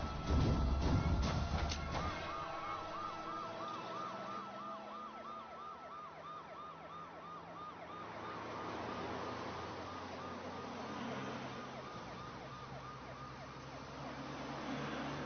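Police siren in a fast rise-and-fall yelp, about five cycles a second, starting about two seconds in after a loud burst of dramatic music and hits. A second siren overlaps it from about the middle, over a low vehicle rumble.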